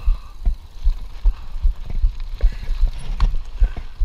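Mountain bike rolling over gravel and rough grass, heard from a camera mounted on the bike: irregular low thumps from the bumps and wind on the microphone, with light rattling clicks from the bike.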